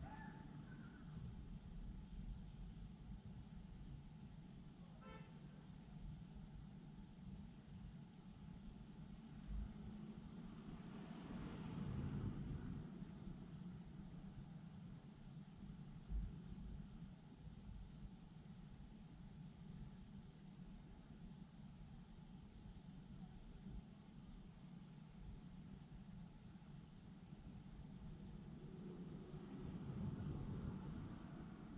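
Faint, steady low rumble of distant night-time city traffic. A vehicle swells past about twelve seconds in, and another approaches near the end. There is also a short faint pitched tone about five seconds in.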